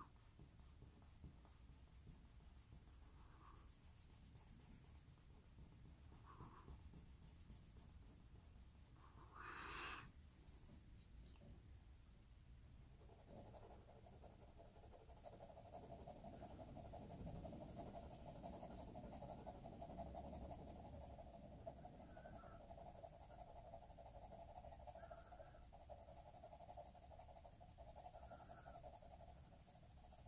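Faint scratching of a graphite pencil shading on drawing paper, near silence, with a faint steady hum coming in about halfway.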